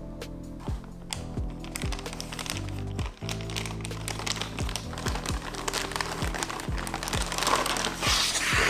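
A clear plastic zip-lock bag crinkling as it is handled, loudest near the end, over background music with a steady beat.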